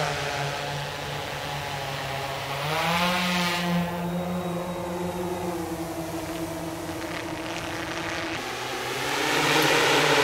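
Propellers of a Freefly Alta heavy-lift multirotor drone humming steadily in flight. The pitch rises about three seconds in as the drone climbs, eases back later, and the hum grows louder near the end.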